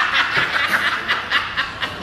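Two men laughing hard together in quick repeated pulses, easing off toward the end.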